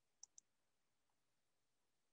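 Computer mouse double-click: two quick, faint clicks near the start, against near silence.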